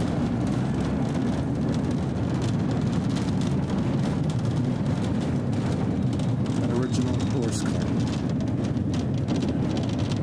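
1898 Brownell streetcar running along its track: a steady rumble of the moving car, with frequent short clicks and rattles.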